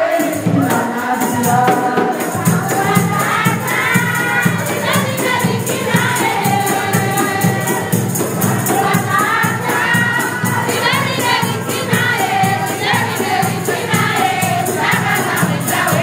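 A group of women singing together over a fast, steady percussion beat with low drum strokes and a high jingling like a tambourine.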